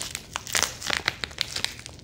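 Thin plastic pouch crinkling and crackling in a rapid, irregular run of small clicks as fingers work at the tape sealing it shut.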